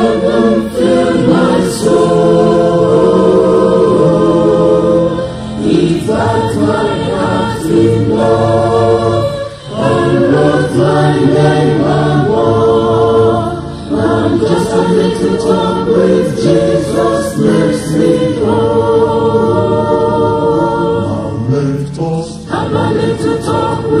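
Church choir singing a gospel hymn in several-part harmony. The voices hold long chords with vibrato, in phrases separated by brief breaks.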